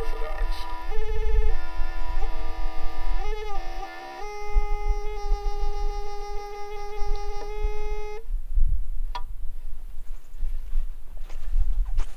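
Experimental noise music: a buzzy sustained tone rich in overtones, its pitch bending and wobbling in the first few seconds, then holding steady before cutting off suddenly about eight seconds in. A low rumble runs underneath, and a single sharp click follows near the end.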